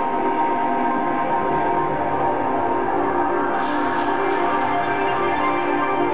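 Live electronic music played on synthesizers: many sustained tones held together as chords at a steady level.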